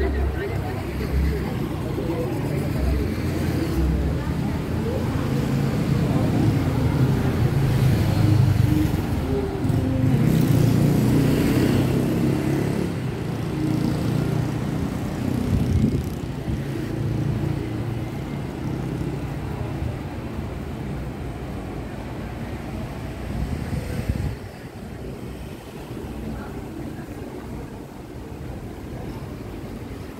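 Street traffic: car engines running and passing. The rumble is loudest between about six and twelve seconds in and quieter over the last few seconds.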